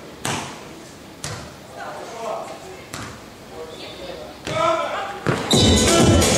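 Beach volleyball struck by hand: the sharp smack of a serve just after the start, then further hits about a second in and at three seconds, with players' voices calling in between. Loud arena music comes in near the end, once the point is over.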